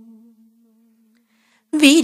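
A woman's held hummed note fades out in the first half second, leaving near silence, then her singing voice comes back in near the end with a wavering, ornamented pitch.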